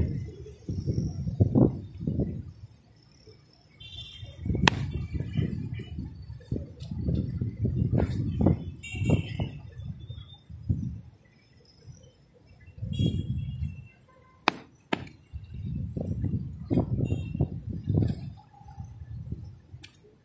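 Wind gusting over the phone's microphone in uneven bursts of low rumble with short lulls between, broken by a few sharp clicks.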